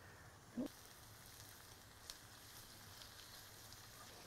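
Faint sizzling of onions and diced preserved figs cooking in a cast iron skillet over charcoal, with a brief soft sound about half a second in.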